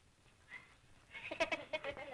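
A wordless, quavering human voice on an old film soundtrack, starting about a second in after a quiet moment of film hiss.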